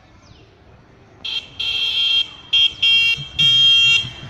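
Electric bicycle's electronic horn sounding a high, buzzing beep in five irregular blasts, the first about a second in, the longest at the end.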